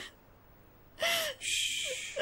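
A woman crying: a short whimpering sob about a second in, then a long breathy gasp.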